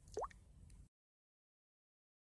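A single short plop that rises quickly in pitch. Then the sound cuts off suddenly to dead silence, as the phone's screen recording ends.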